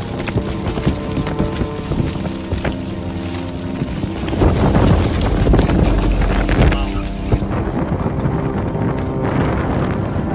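Storm wind and rain on the microphone, with background music underneath. A heavier gust buffets the microphone from about four to seven seconds in.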